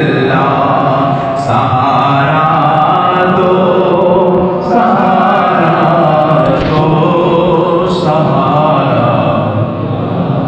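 Voices chanting an Islamic devotional chant, continuous and loud with no break.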